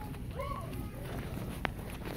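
Shopping cart rolling on a hard, polished store floor: a steady low rumble, with one sharp click about one and a half seconds in. Faint voices in the background.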